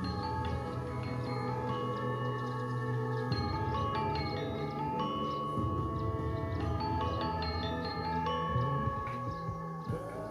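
Balinese ensemble music: chiming, bell-like mallet notes over a low bass, with several notes held for a second or more and the low part turning busier about three seconds in.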